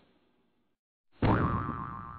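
After about a second of near silence, a cartoon 'boing' sound effect from a logo sting: a sudden hit with a springy tone that rises briefly, then holds and fades away.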